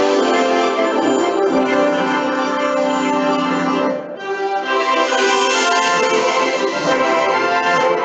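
Orchestral fanfare produced in Cubase with a sampled orchestral instrument library, playing back as recorded audio: sustained full chords, with a brief break about four seconds in before the next chord.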